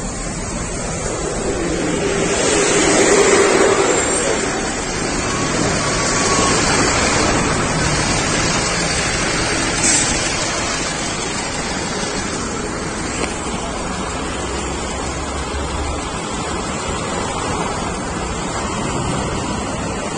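Steady rushing street noise with indistinct voices of people nearby, swelling for a couple of seconds about three seconds in.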